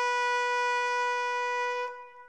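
A horn-like wind instrument holding one high, steady note, rich in overtones. It cuts off near the end, leaving a fading ring.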